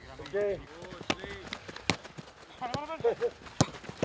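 A football being kicked back and forth in a passing drill: a few sharp, irregular thuds of boot on ball, with short shouted calls between them.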